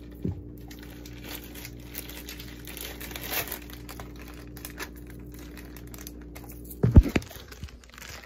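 Clear plastic bag crinkling and rustling as it is handled, in irregular crackles over a low steady hum. A loud knock comes about seven seconds in, as the phone filming it is picked up.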